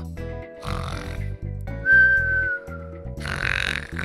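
Cartoon snoring sound effect over background music with a steady beat: two snore breaths, about a second in and again near the end, with a high whistle between them that falls slightly in pitch.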